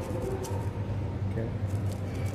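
Faint light clicks and scratches of a thin metal rod working sand inside a small glass bottle, over a steady low background hum.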